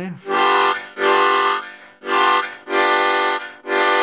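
Seydel Pulmonica MD (Medical Diatonic) harmonica, its upper section blown as a chord, a dominant seventh. The chord is sounded in five short, rhythmic pulses at a steady pitch.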